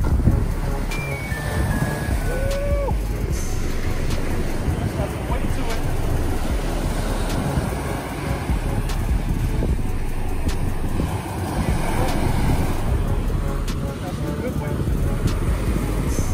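Ocean surf washing up the beach and wind buffeting the microphone in a steady rush, with background music over it.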